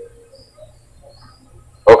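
A pause in a man's talk, with only faint room hum, before his speech starts again near the end.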